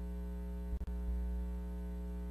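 Steady electrical mains hum, a low buzz with a stack of overtones, with a brief dip just under a second in.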